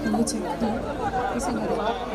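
Large crowd talking among themselves: a steady babble of many overlapping voices.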